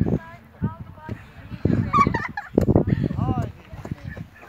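Several short shouted calls from people on and around a grass football pitch, high and drawn out, over a low rumble.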